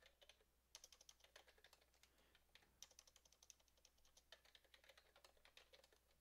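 Faint computer keyboard typing: an irregular run of quick keystrokes as a line of code is typed.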